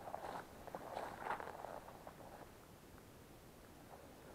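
Faint footsteps swishing through tall grass on a forest path, mostly in the first two seconds.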